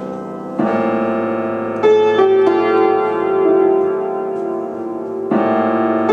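Vintage Tokai upright piano played solo: a chord struck about half a second in, a higher group of notes about a second later that is left ringing, and another chord near the end.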